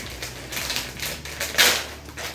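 Plastic packaging of a waterproof phone pouch being handled and opened: irregular crinkling and clicking, with a louder crinkle about one and a half seconds in.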